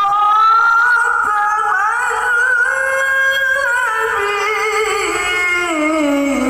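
Sholawat, an Islamic devotional song, sung in one long ornamented vocal line: held notes with quick turns, climbing about two seconds in and falling again near the end.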